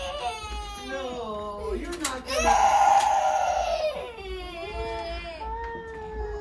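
A toddler's high-pitched, drawn-out cries, the loudest held for over a second about halfway through.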